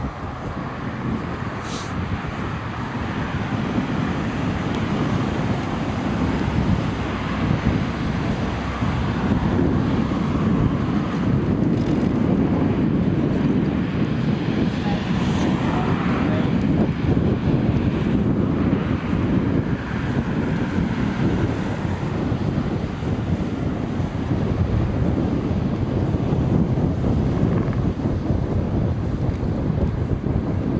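Wind noise on the microphone of a camera riding on a moving bicycle, a steady low rumble that grows louder over the first several seconds, with cars passing on the road alongside.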